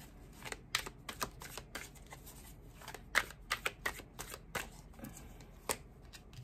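A deck of tarot cards being shuffled by hand: an irregular run of quick, sharp card snaps and slaps, coming in clusters.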